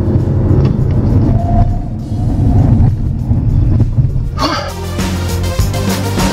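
The 2015 VW Golf TDI's turbodiesel engine running under load, heard inside the cabin as a low drone with road noise, with background music laid over it. About four and a half seconds in, the car sound drops back and the music takes over.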